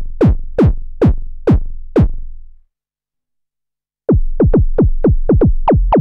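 Korg Monologue analog synthesizer playing a synthesized kick drum patch: a run of hits, each a quick downward pitch sweep into a low thump, about two and a half a second. It stops about two and a half seconds in, and after a short silence a faster run of duller hits, about four a second, starts near the two-thirds mark.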